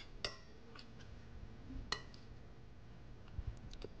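Metal spoon tossing salad in a glass mixing bowl, giving faint, scattered clicks of spoon against glass: a sharper one about two seconds in and a quick few near the end.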